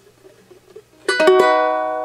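A chord strummed on a ukulele about a second in, several quick strokes close together, then left to ring and fade slowly.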